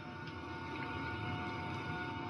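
Faint steady background hum with a few thin held tones.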